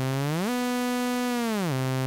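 Xfer Serum's init-preset sawtooth synth playing a sustained low note, then gliding up about an octave and back down with legato portamento. Each glide lingers near the starting pitch and then snaps onto the new note, because the portamento curve has been bent away from linear.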